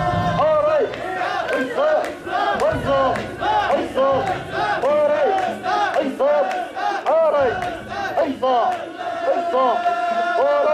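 Mikoshi bearers chanting in unison as they carry and bounce a portable shrine, many voices shouting a short rhythmic call, "essa", over and over.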